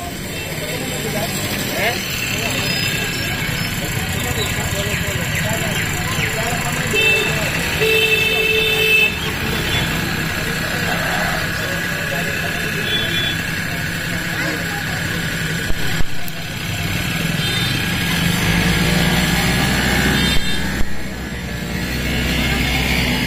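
Outdoor background of steady motor-vehicle noise and indistinct voices, with a brief horn-like tone about seven seconds in.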